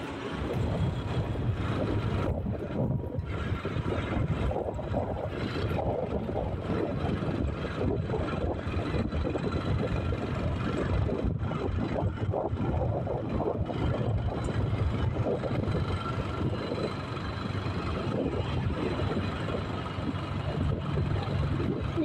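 Steady engine and road noise of a moving vehicle, heard from on board as it drives a winding road.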